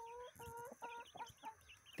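Young chickens giving soft, faint calls: a string of about five short notes, each held at one pitch, with fainter higher chirps above them.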